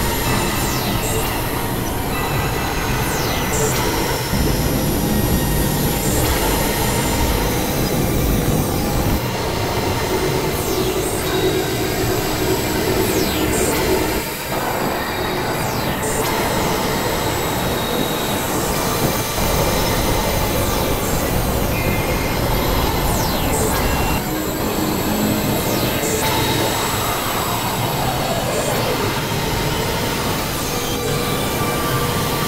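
Experimental synthesizer noise music: a loud, dense wall of hissing, screeching noise over steady drone tones, with high sweeps sliding downward every few seconds. The texture changes abruptly about halfway through and again near the last third.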